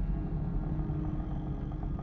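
Steady low rumble with faint held droning tones from a huge copper drum turning over a fire.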